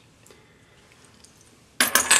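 Quiet room tone, then near the end a quick cluster of sharp metallic clinks as a set of metal ring-sizer gauges and steel calipers is handled.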